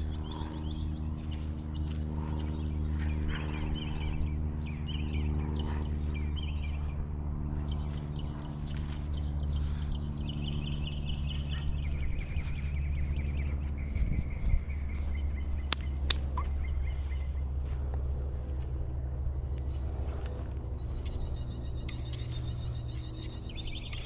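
Birds calling now and then over a steady low hum of several even tones, with a few sharp clicks about midway.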